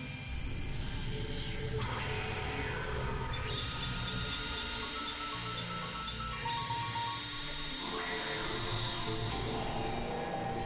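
Experimental electronic synthesizer music: layered held drone tones over a steady low rumble, with a few sweeping pitch glides and short pulsing beeps.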